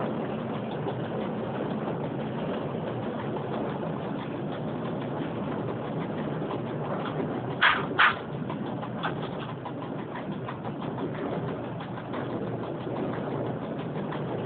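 Steady running noise of an EN57 electric multiple unit heard from its driver's cab, its wheels rolling on the rails. Two short, loud bursts come close together about seven and a half seconds in.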